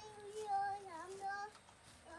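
A young child's voice holding drawn-out, sung notes, the pitch dipping briefly about a second in before levelling out again.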